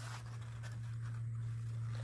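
A quiet pause holding only a steady low hum and a faint background hiss, with no distinct event.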